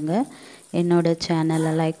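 A voice singing long, level held notes on a repeated pitch, with smooth glides between them, broken briefly about half a second in.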